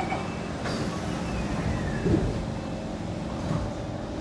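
Kawasaki C151 train's doors sliding shut, meeting with a thump about two seconds in, over the steady hum of the stopped train's cabin.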